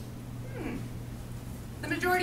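A steady low electrical hum, with a faint falling sweep about half a second in and a short voice-like call with falling pitch near the end.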